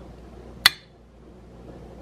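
A tiny, hard-shelled chicken egg tapped once against a glass baking dish: a single sharp clink with a brief ring about two-thirds of a second in. The shell does not crack.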